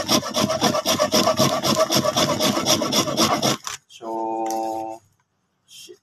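A hard lump of pot-baked salt scraped on a grater in rapid rasping strokes, several a second, grinding it into powder; the scraping stops about three and a half seconds in, followed by a drawn-out spoken "so".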